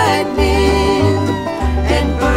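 Country song with a sung line over string-band accompaniment and a steady bass; the voice holds its notes with vibrato.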